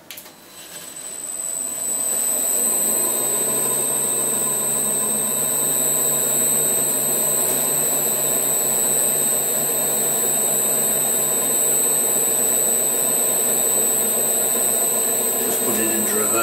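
Rivett 608 lathe started up: it runs up to speed over about two seconds, then runs steadily with its drive and gear train going and a steady high whine over it.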